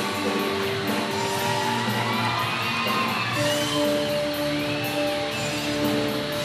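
Show choir singing an upbeat pop number with band accompaniment and a steady cymbal beat. About three and a half seconds in, the voices settle onto a long held chord.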